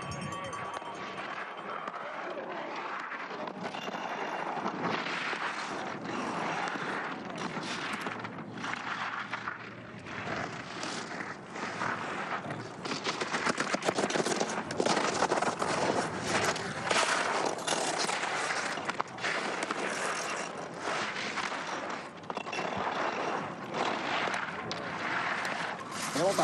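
Giant slalom skis carving turns on the snow: the steel edges scrape and chatter in irregular surges with each turn, louder in the second half.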